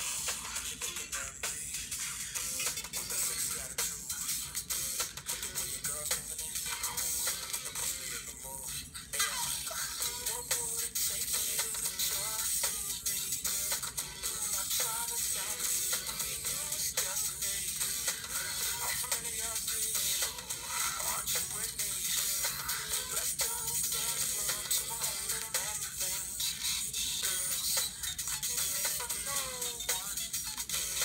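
Vinyl record played through a sewing needle taped into a paper cone, the disc turned by hand: thin, low-fidelity music, surprisingly loud, under heavy hiss and crackle of surface noise. Its speed and pitch waver because the record is spun by hand.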